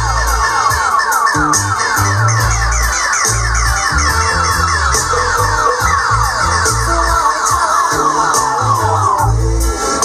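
Dub reggae played loud over a sound system, with a deep, rhythmic bassline and ticking hi-hats. A rapidly repeating falling-tone effect is laid over the music and stops shortly before the end.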